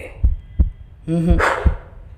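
Low double thumps in a heartbeat rhythm, about one pair a second, from a film soundtrack's sound effect. A brief man's vocal sound comes over it about a second in.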